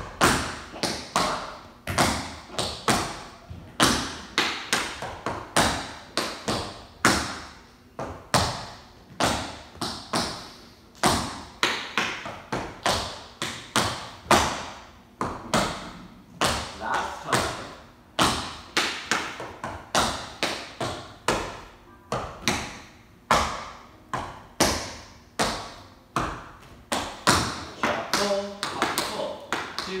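Tap shoes striking a wooden studio floor in a tap dance routine: quick clusters of sharp taps, several a second, in an uneven rhythm with heavier stamps among them.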